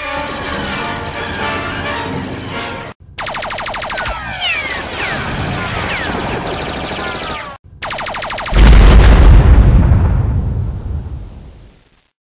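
Edited-in film-style sound track: layered music and effects, then rapid blaster fire with falling zaps from about three seconds in, and a loud explosion about eight and a half seconds in whose rumble fades over the next three seconds.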